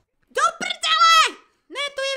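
High-pitched cartoon character voices calling out without recognisable words: a short call, then a longer call that rises and falls, and another high voice starting near the end.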